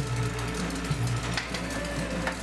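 A platen letterpress running through its printing cycle, with a repeating mechanical churn and a sharp clack about once a second as the platen and rollers work.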